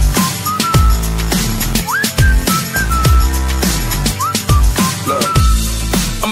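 Pop-rap song's whistled melody hook: short whistled notes with quick upward slides, played over a beat of deep bass hits that drop in pitch.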